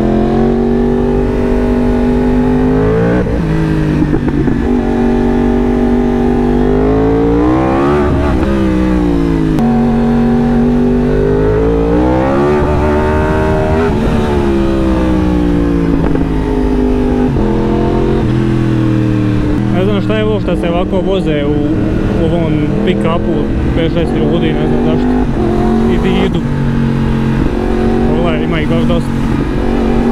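2018 Yamaha R1's inline-four engine running under way, its note rising and falling several times as the bike accelerates, shifts and eases off.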